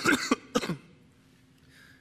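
A man coughing, a quick run of a few coughs within the first second, from a lingering respiratory illness.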